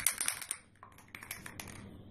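Scissors cutting through cotton fabric: a quick run of crisp snips and clicks, densest in the first half second, with a few more about a second in.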